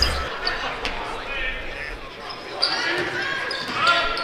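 Sounds of a basketball game in a gymnasium: a basketball bouncing on the hardwood court, with short high sneaker squeaks and voices from players and the crowd. The sound echoes through the large hall.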